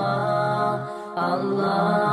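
Melodic vocal chanting in long held, wavering notes, with a brief dip about a second in.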